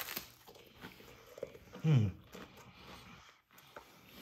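Quiet crunching and chewing of a crisp baked cinnamon-sugar tortilla chip with soft apple topping, with a short, falling "mm" of approval about two seconds in.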